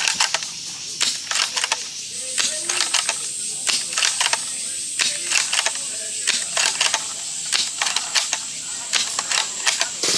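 A G&G Lee Enfield No.4 Mk I gas-powered airsoft bolt-action rifle firing shot after shot, with the bolt worked back and forth between shots: a quick run of sharp clicks and metallic clacks. A steady high-pitched whine comes in about two seconds in.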